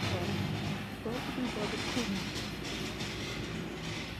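Steady, rumbling background noise of a large store, with faint voices of other shoppers talking about a second in.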